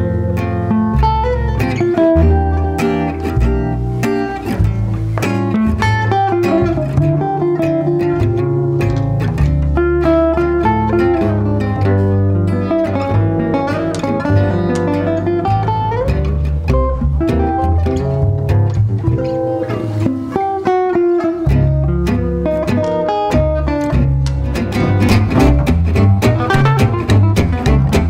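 Live jazz manouche trio: a lead acoustic guitar plays a fast melodic solo over a rhythm guitar's strummed chords and a plucked double bass. The bass drops out for a moment about two-thirds through, and the strumming grows louder near the end.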